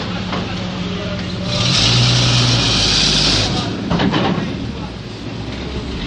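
A WWII-era US Army truck's engine running as the truck drives slowly past, with a loud hiss lasting about two seconds partway through and a few knocks about four seconds in.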